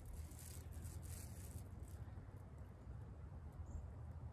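Faint outdoor background: a steady low rumble under a soft hiss.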